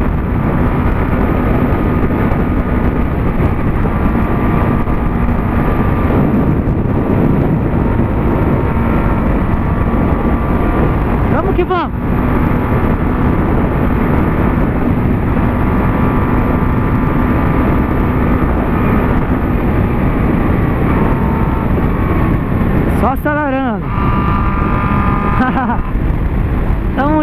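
Honda CB600F Hornet's inline-four engine with an Atalla 4x1 exhaust running steadily at highway speed, under heavy wind noise. Twice the engine note briefly drops and climbs back, about twelve seconds in and near the end.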